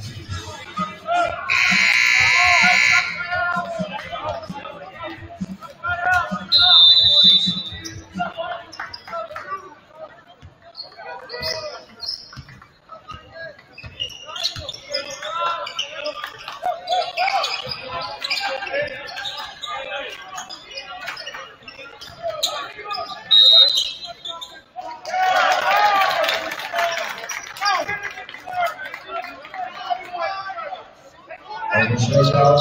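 Gym sounds of a basketball game. A scoreboard buzzer sounds for about two seconds, starting a second in. A referee's whistle blows shortly after and again near the end, over ball bounces and crowd voices, and the crowd noise swells after the second whistle.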